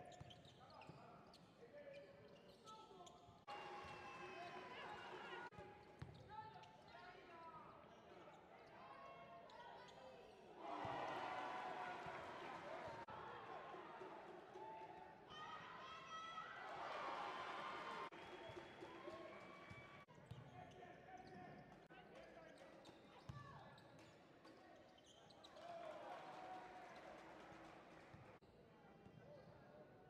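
Faint court sound of a basketball game: a ball bouncing on the hardwood floor with scattered knocks, and players' and spectators' voices calling out, louder in the middle.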